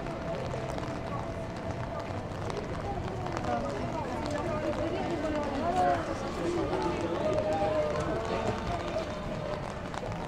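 Passers-by talking as they walk past on a wet pedestrian street, their voices loudest in the middle stretch, over footsteps and a steady wash of street noise.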